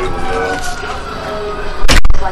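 A long tone with several overtones sliding slowly down in pitch, like a siren winding down, and a sharp loud bang near the end.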